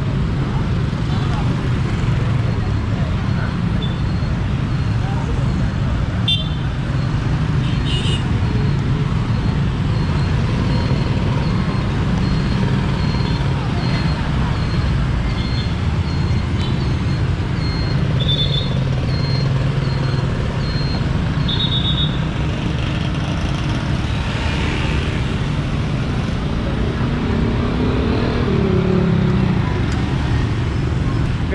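Busy street traffic, mostly small motorcycles, with a steady engine rumble and several short horn toots. Voices can be heard in the crowd, most clearly near the end.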